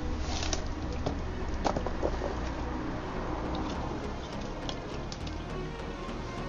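A cardboard box being cut and opened with a small knife: cardboard scraping and rustling, with scattered sharp clicks.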